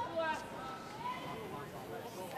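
Faint voices talking over a low, steady background of ice-rink noise.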